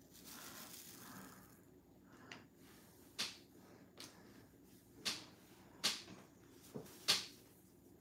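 Faint, light clicks and taps of small hard objects being handled on a tabletop, about seven of them at irregular intervals of roughly a second, with a soft rustle at the start.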